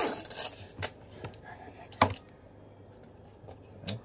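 Paper wrapper of a chocolate-topped ice cream cone being peeled off and crinkled by hand, with a few sharp crackles, the loudest about two seconds in.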